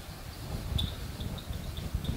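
Marker writing on a whiteboard: a few faint, short squeaks of the tip about a second in and after, over a low, uneven background rumble.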